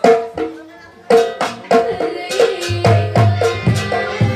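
Banyuwangi gamelan ensemble striking up for a gandrung dance: a couple of spaced strokes, then a steady beat of struck, ringing metal notes with drum. Deep low drum strokes join about two-thirds of the way through.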